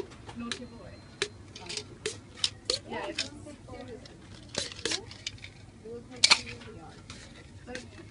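Irregular sharp plastic clicks and knocks from a prototype locking mechanism as a white plastic cap is twisted and pushed on and off a black ribbed tube, with the loudest snap about six seconds in.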